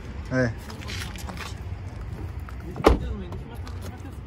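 A car's driver door slammed shut about three seconds in: one sharp, loud thump.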